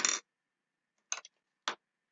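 Two brief sharp ticks, about half a second apart, from craft supplies being handled and set down on a craft mat.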